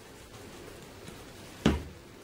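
Faint sound of embossing powder being poured from its jar, then a single sharp knock about a second and a half in as the jar is set down on the craft table.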